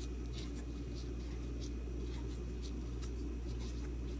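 Light scratchy rustling of plastic-gloved hands pulling apart and gathering dry shredded kunafa (kataifi) dough strands on a plastic cutting board, in faint irregular ticks. A steady low hum runs underneath.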